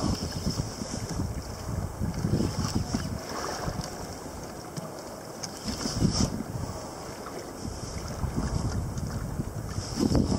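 Wind buffeting the microphone in uneven gusts, with water sloshing and splashing against a fishing kayak.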